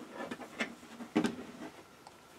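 Folded cotton T-shirt being handled on a tabletop: soft fabric rustling and brushing, with a brief louder rustle a little past halfway.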